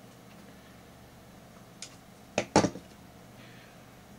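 Small hand work with fine wire and small metal tools at a wooden jig: a faint click a little before halfway, then two sharp knocks close together just after halfway.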